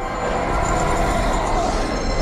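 Film soundtrack: a dramatic score with sustained notes, mixed with a heavy, steady rumble of sound effects.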